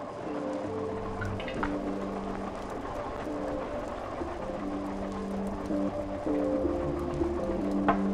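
Electronic music played live on a modular synthesizer: sustained notes that change pitch every second or two over a steady hiss-like noise wash, with a deeper bass note coming in briefly twice.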